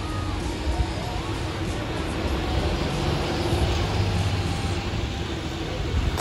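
Street traffic with diesel city buses: engines running with a steady low rumble over the noise of passing vehicles.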